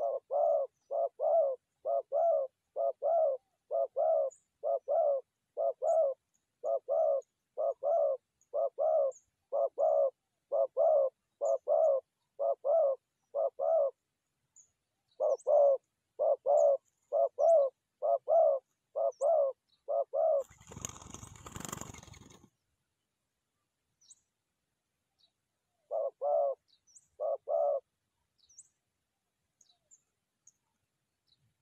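Spotted dove cooing close by: a fast, even run of short coos, about two a second, with a brief pause partway. A short burst of wing flapping or rustling follows, then two more coos near the end, over faint high chirps from small birds.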